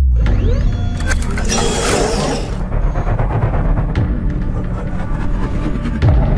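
Cinematic intro music: it opens on a sudden deep bass boom. A rushing swell of noise builds and cuts off about two and a half seconds in, over a steady low rumble.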